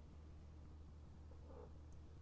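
Near silence: a low steady hum, with a faint brief sound about one and a half seconds in.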